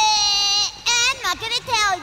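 High-pitched cartoon voice giving a wordless, sing-song taunt: one long held note, then a quick run of short syllables that bend up and down.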